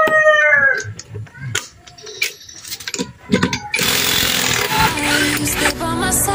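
A rooster crowing, the call falling away about a second in. Then scattered clicks and knocks of hand tools on metal, and from about two-thirds through a continuous dense buzz of a cordless impact wrench.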